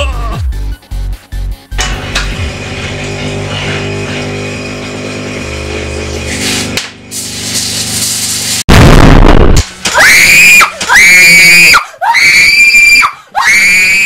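Background music; about nine seconds in, a loud burst of noise lasting about a second, then a frightened woman screaming loudly four times.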